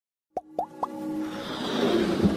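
Animated logo intro sound effects: three quick upward-sliding pops about a quarter of a second apart, then a whoosh swelling steadily louder over a held musical tone.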